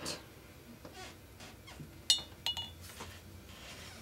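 Two short, light clinks about half a second apart as hard art supplies are handled on a craft table, amid faint handling noise.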